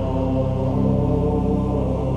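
Gregorian chant: voices singing slow, long-held notes over a steady low drone.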